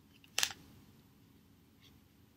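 Prismacolor marker tip rubbing across a paper plate: one short scratch about half a second in, then only a faint tick near the end over quiet room tone.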